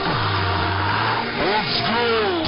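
Electronic intro music and sound effects: a deep bass tone swoops down and holds steady for about a second, with sliding, swooping pitches above it.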